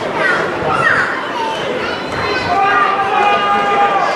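Shouts and calls from players and spectators at a football match, with no clear words. A single long, held shout begins about halfway through and lasts until the end.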